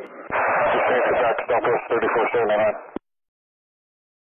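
A hissy, narrow-band air traffic control radio transmission with an unclear voice that cuts off abruptly about three seconds in.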